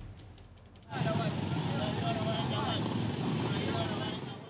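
Street noise from a phone recording, starting suddenly about a second in: people's voices over the running of motor vehicles.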